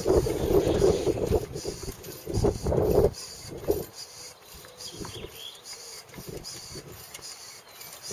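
Hand pump being worked in repeated strokes to raise a telescopic camera mast, with regular clicks about two or three a second. A louder low rumble fills the first three seconds and cuts off suddenly.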